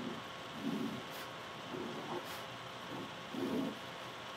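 Black marker drawing on paper: several short, faint strokes about a second apart as lines and a circle are drawn.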